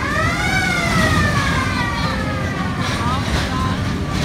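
A siren wailing once: a quick rise in pitch, then a slow fall over about three seconds, over a steady low background rumble.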